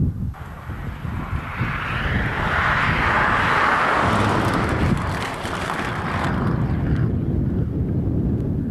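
Renault 5 rally car passing at speed, its engine and tyre noise swelling to a peak about three to four seconds in and fading away by around seven seconds, over a steady low rumble.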